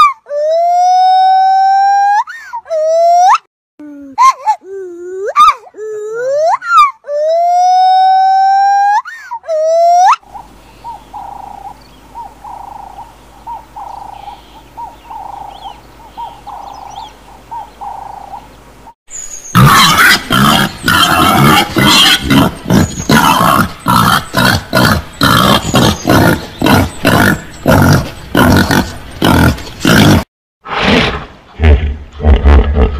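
Monkey calls for the first ten seconds: long pitched cries that rise, hold and rise again, the same sequence heard twice. A quieter stretch of faint bird chirps over a low hum follows. From about two-thirds of the way through come loud, rapid grunts from peccaries.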